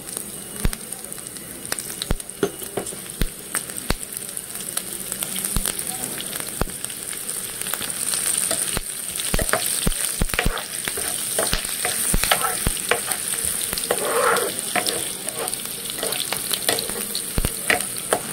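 Cumin seeds and chopped green chillies sizzling in hot oil in a nonstick frying pan, the tempering (tadka) stage. A spatula stirs them, with frequent small clicks and scrapes against the pan over a steady hiss.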